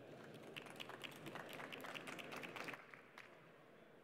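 Faint, light applause from a small audience. The scattered claps thin out and stop after about three seconds.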